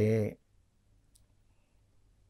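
A man's speech breaks off just after the start, then near silence with a single faint click about a second in.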